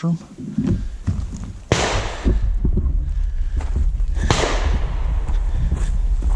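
Two sharp reports from a 300 PRC rifle, the first about two seconds in and the second about two and a half seconds later, each with a short fading tail. Low wind rumble on the microphone runs under them.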